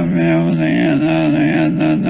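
A sustained, chant-like vocal drone on one low pitch that wavers slowly, without the breaks of speech.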